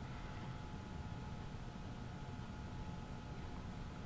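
Faint steady background hum with a few thin, steady high tones and no distinct event: room tone between the spoken remarks.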